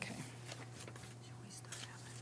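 Faint whispered talk among people at a meeting table, over a steady low electrical hum.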